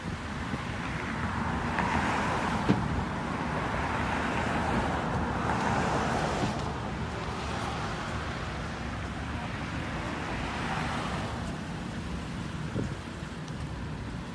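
Road traffic noise, steady engine and tyre sound from cars on the street, swelling a couple of times as vehicles go by, with wind on the microphone. A single sharp click about three seconds in.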